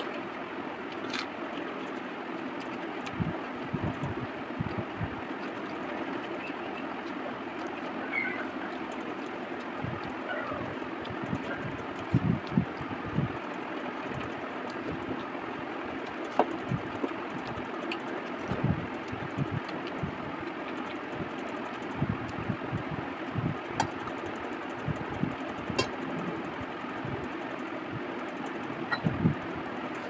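Close-miked chewing and mouth sounds of a person eating curry and rice by hand: irregular soft low thuds with occasional sharp clicks, over a steady background hiss.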